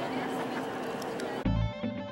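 Murmur of many people's voices in a large church interior, cut off abruptly about one and a half seconds in by background music with guitar and bass notes.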